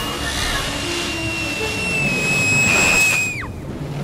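Dramatic film soundtrack: a high, held, whistle-like note that slides down and breaks off about three and a half seconds in, over a low rumbling bed of score and effects.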